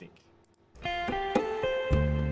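A song's guitar intro starts about three-quarters of a second in: a few single plucked notes, then a deep bass note joins near the end.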